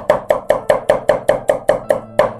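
Chinese cleaver chopping garlic into mince on a thick wooden chopping block, a fast, even run of about five chops a second.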